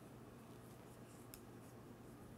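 Near silence: faint, scattered clicks of knitting needles working the yarn, the clearest about one and a half seconds in, over a low steady hum.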